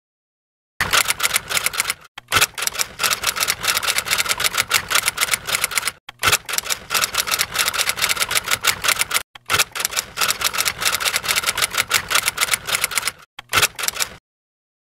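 Typewriter-style typing sound effect: rapid keystroke clicks in four runs with short breaks between them, starting about a second in and stopping near the end.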